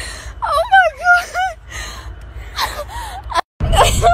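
A woman crying and wailing in distress over a squirrel she has hit with her car: high, wavering sobbing cries with gasps. Near the end there is a brief cut, then a low rumble inside the car.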